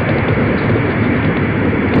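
Saturn V rocket's first-stage engines in flight, heard from the ground as a loud, steady rumble.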